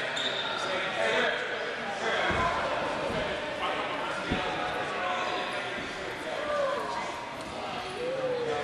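Basketball bounced twice on a hardwood gym floor, two low thuds a couple of seconds apart, under the chatter of voices echoing in the gym.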